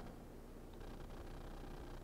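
Quiet room tone in a pause between speech: a faint steady low hum with no distinct sounds.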